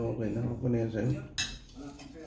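Metal spoon and fork clinking and scraping against a plate during a meal, with one sharp clink about one and a half seconds in. A low voice runs through the first second.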